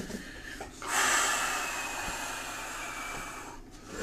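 A long, breathy exhale. It starts suddenly about a second in and fades out gradually over nearly three seconds.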